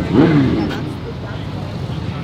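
A voice for under a second, then steady outdoor background noise with a low rumble.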